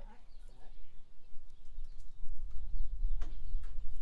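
Low, gusty rumble of wind buffeting the phone's microphone, louder in the second half, with a single sharp click a little after three seconds.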